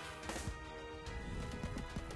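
Online slot game's background music, steady and fairly quiet, with a few short clicks from the game's spin sounds.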